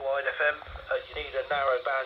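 Speech received over the air on 434.550 MHz FM and played through a Whistler scanner's small built-in speaker: a thin, narrow-sounding voice with no deep bass or high treble.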